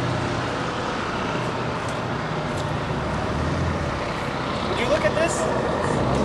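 A vehicle engine hums steadily at low revs under outdoor traffic noise, with people talking. A voice stands out briefly about five seconds in.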